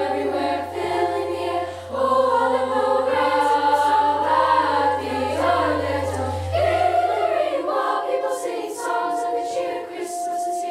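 A high-school girls' choir singing in several parts, holding long chords that shift every second or two, with a brief dip in loudness about two seconds in.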